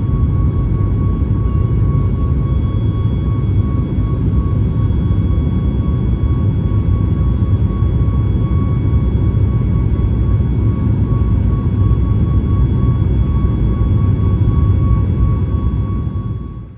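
Steady, loud roar of a Boeing 737 MAX 8's CFM LEAP-1B turbofan engines heard from inside the cabin during takeoff, with a steady high whine over it. It fades out right at the end.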